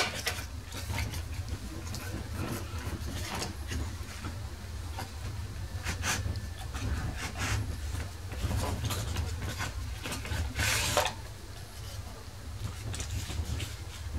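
Cardboard packaging being handled: a small tuner box opened and its folded card insert slid out, with rustling, scraping and light taps, and a louder rustle late on. A steady low hum runs underneath.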